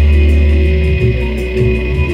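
Live slam death metal band playing an instrumental passage: heavily distorted electric guitar and bass ring out a loud, low held note for about a second, then move on to further low held notes, with no vocals.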